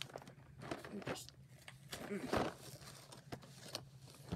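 Cardboard advent calendar box being handled and its first flap worked open: scattered small clicks, scrapes and rustles of cardboard, with a brief voice sound about two seconds in.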